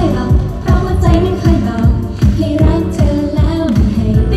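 Pop song played loud with a steady drum beat, young women singing the melody into microphones.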